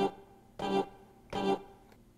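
A single sampled accordion note played from the pads of a Maschine sampler. It sounds three times, about every 0.7 seconds, each a short, steady reed tone.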